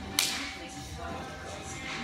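One sharp slap of two palms meeting in a high-five, a fraction of a second in, over background music.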